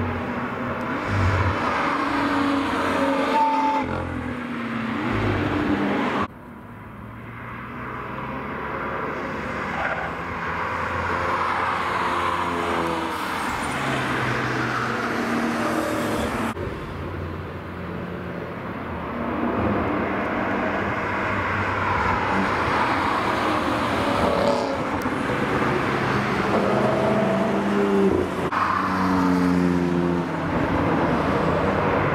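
Cars driving past one after another on a race track, each engine note rising and falling as it accelerates through and away. The sound breaks off abruptly twice, about six seconds in and about halfway through, where separate passes are cut together.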